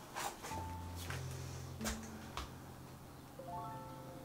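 Faint background music with sustained held tones, with a few light knocks and taps in the first half as a canvas is handled and set down on a table.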